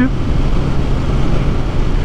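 Kawasaki Ninja 1000SX's inline-four engine running at a steady, even highway cruise, heard from the rider's seat with road and wind noise; a steady low hum with no revving.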